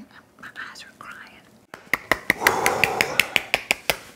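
Soft whispering, then a rapid run of about a dozen sharp clicks or taps, roughly five a second, over a rustling noise.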